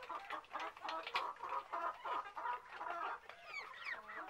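A flock of farmyard poultry calling, with many short clucks overlapping one another continuously.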